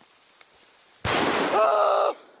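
A sudden loud bang about a second in, followed at once by a man's loud shout.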